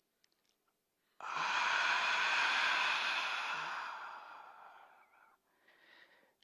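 A deep breath let out through the mouth as one long, breathy 'haaa', starting about a second in and fading out over about four seconds. It is the exhale of a yogic breathing exercise: air breathed in through the nose, then released through the mouth.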